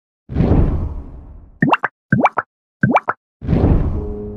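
Edited intro sound effects: a whoosh, then three quick pops that each rise sharply in pitch, about half a second apart, then another whoosh leading into music.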